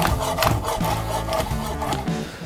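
Chef's knife slicing through a cooked beef tongue, the blade drawing through the meat and knocking on a wooden cutting board in several short strokes, with background music underneath.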